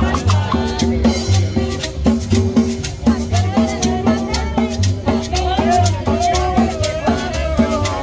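Live street band playing danceable Latin music: a steady beat of drums with quick ticking percussion, a bass line and a melody over it.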